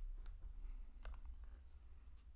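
A few faint, sharp clicks over a low, steady hum.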